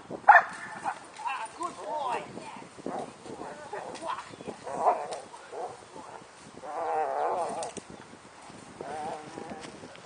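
German shepherd barking in agitation during bite work, mixed with a man's wordless shouts.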